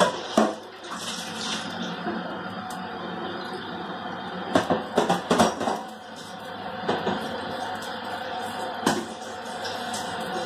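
Stock and pan juices boiling hard in a stainless steel saucepan to reduce for gravy: a steady bubbling with sharp pops and spits now and then, several close together about five seconds in and another near nine seconds.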